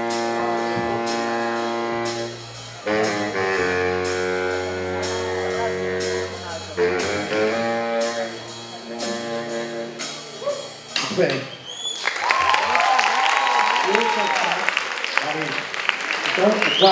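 Baritone saxophone playing a slow solo line of long held low notes in three phrases. About twelve seconds in, the playing stops and applause follows.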